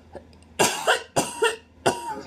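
A woman coughing three times in quick succession, a cough from a head cold.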